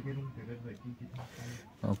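A man's low voice speaking in short, broken phrases.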